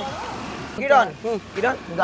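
Voices talking in short bursts over steady street traffic noise.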